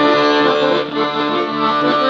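Piano accordion playing a slow tune in held chords, its right-hand keyboard and left-hand bass buttons sounding together, the notes changing twice.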